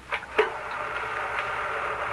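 Sound effect of a film projector being started: two short clicks, then the projector running with a steady, rapid mechanical ticking.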